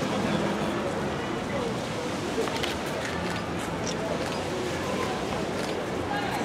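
Indistinct low talking of people standing close by, no clear words, over a steady outdoor background, with a few faint clicks in the middle.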